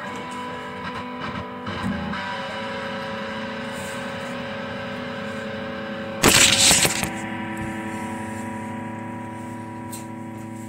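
Electric guitar strummed a few times, then a chord left ringing on, fading slowly. About six seconds in, a loud burst of handling noise as the recording phone is grabbed and laid down, while the chord keeps sounding.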